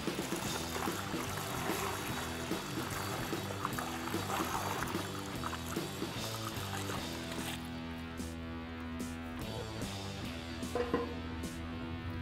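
Beer wort poured from a stainless brew pot through a plastic funnel into a plastic carboy, a splashing pour that stops about two thirds of the way through, under background music.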